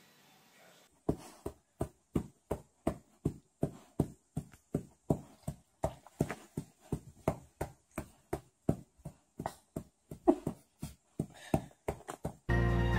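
A cat's tail thumping again and again on a leather sofa cushion: an even run of sharp knocks, about two and a half a second, starting about a second in.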